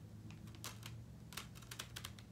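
Light plastic clicks and taps as DVDs and their clear plastic case are handled, a few quick clicks coming close together in the second half.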